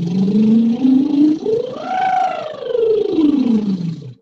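A woman's lip trill ("bubble") vocal exercise: one continuous slide that climbs from a low note to a high note about halfway through and glides back down, a little softer at the top. It is a breath-support drill meant to carry the voice through the middle register without strain.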